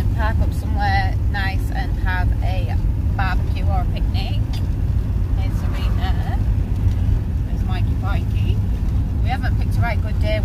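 Steady low engine and road rumble heard inside the cabin of a moving campervan, with voices talking over it.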